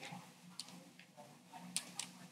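A few faint, sharp clicks from a computer mouse and keyboard, about four in all, the loudest a little before the end, over a low steady hum.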